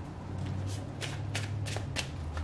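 A deck of tarot cards being shuffled by hand: a run of quick papery snaps and rustles beginning about half a second in, over a steady low hum.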